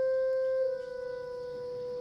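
Background score music: a single long held note with a woodwind-like tone. It gets quieter a little after half a second in and then holds steady.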